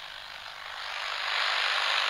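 Radio static: a steady, even hiss that swells over the first second or so and then holds.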